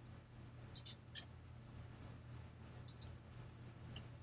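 Faint clicks of a computer mouse: a few quick clicks about a second in and two more near the end, over a low steady hum.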